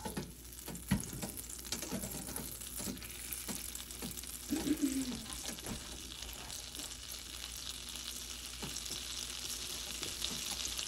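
Butter melting and sizzling in a hot nonstick frying pan, the sizzle growing steadily louder toward the end as the butter foams. A sharp knock about a second in, and a few lighter knocks.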